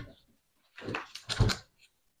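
A few short scrapes and knocks of a small kitchen knife peeling a potato and a carrot by hand, the loudest about a second and a half in.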